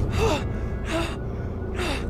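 A man panting hard and gasping for breath, out of breath after exertion. There are three ragged gasps less than a second apart, each with a short voiced catch, over a steady low rumble.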